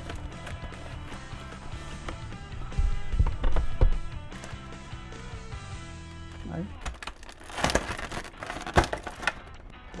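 Background music playing, with handling noise from a clear plastic blister tray: low knocks about three seconds in and a stretch of plastic rustling and clicks near the end.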